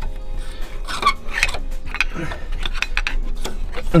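A screwdriver levering worn brake pads out of a Mercedes Sprinter's front brake caliper carrier. Irregular light metallic clicks and scrapes sound as the loose steel-backed pads shift against the carrier.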